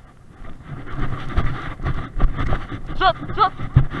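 Wind buffeting and movement knocks on a body-worn camera as its wearer walks over grass, louder from about a second in. Near the end comes the first of a herder's short, repeated calls driving the sheep.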